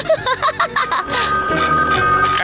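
A cartoon character laughing for about the first second, then a telephone ringing with a steady high trill.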